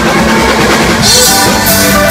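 Live rock band: an electric guitar solo with held, changing notes over bass and drum kit. About halfway through, cymbal strikes come in on a steady beat.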